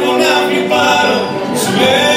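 A man singing into a microphone, accompanied by violin and accordion.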